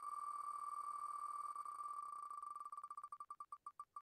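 Spin sound of the online Wheel of Names prize wheel: rapid electronic ticks so close together at first that they run into a buzz, slowing steadily as the wheel loses speed, until they are separate ticks spaced further and further apart near the end.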